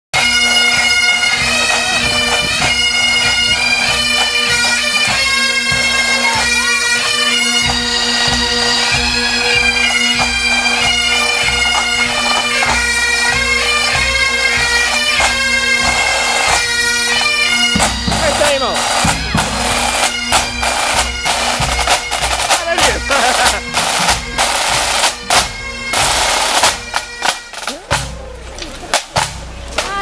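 A pipe band on the march: Great Highland bagpipes playing a tune over their steady drones, with drums beneath. About eighteen seconds in, the pipes stop and the snare and tenor drums play on alone in a crisp marching beat.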